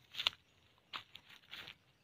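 Footsteps on dry leaf litter and soil: a handful of soft, short crunches and rustles.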